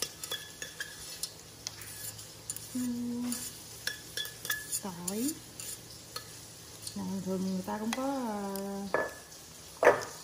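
Chopsticks scraping and tapping inside a stainless steel mixing bowl as wet papaya salad is scraped out onto a plate, with small clicks, some of them leaving a brief metallic ring. A person makes a few wordless hummed sounds in between, and there is one sharp, loud clack just before the end.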